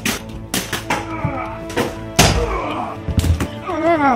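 A series of knocks and thuds from a scuffle over background music, the heaviest a deep thud a little over two seconds in. A short cry comes near the end.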